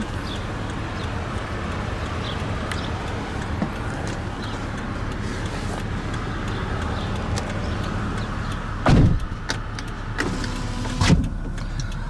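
Driver's power window on a 2012 Toyota Alphard running down with a steady motor sound. Two heavy thumps about two seconds apart come near the end.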